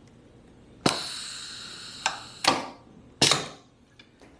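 Golf shaft being unclamped and slid out of a tip-stiffness testing machine: a metallic clank about a second in that rings on for about a second, then three sharper knocks of metal parts and shaft.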